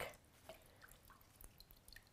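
A few faint, irregular drips of water falling from a potted plant, just dunked and held up to drain, back into a galvanized bucket of water.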